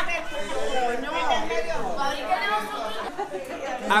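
Overlapping chatter of several people talking at once in a room, with no other sound standing out.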